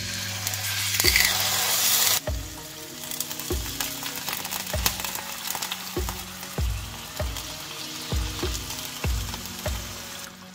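Pork steaks laid into hot oil in a frying pan, sizzling loudly as the first piece goes in about a second in, then a steady sizzle as more pieces are added. A low regular beat of background music runs underneath.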